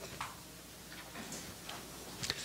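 A few faint clicks over quiet room tone: a hand-held presentation remote being pressed while the slide fails to advance.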